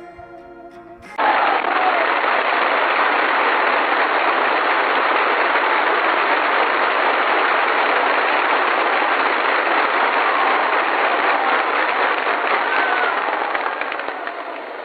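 Soft music briefly. About a second in, a crowd bursts into loud, sustained applause with a dense crackle, heard through a thin, narrow-band old archival recording. It carries on steadily and eases slightly near the end.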